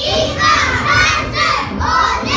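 A group of young children shouting together in short, rhythmic calls, about two a second, as the shouts of a kung fu exercise routine.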